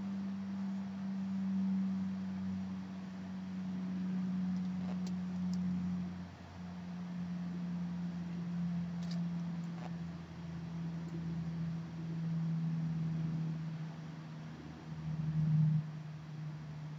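A steady low hum on one tone, which steps slightly down in pitch about halfway through and sags a little more near the end, with a few faint ticks.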